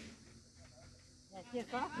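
Quiet outdoor background with a steady high hiss for over a second, then voices talking in the last half-second or so.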